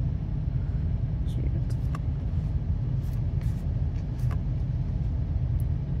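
Trading cards handled in the hands, giving a few light, scattered clicks and taps of card edges, over a steady low rumble.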